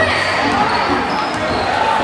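Basketballs bouncing on a gym court during warm-up, under a steady mix of people talking.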